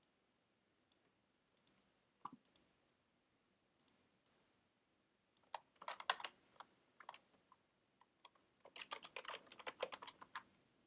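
Computer keyboard typing, faint: scattered single keystrokes at first, then quicker runs of keys about halfway through and again near the end.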